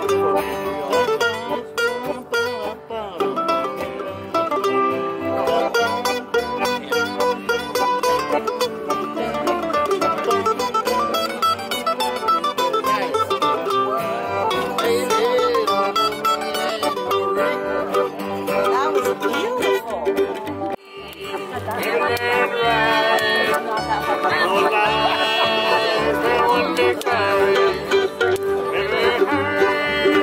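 Acoustic string-band music on plucked strings, guitar and a banjo or mandolin, with a voice singing over it in the latter part.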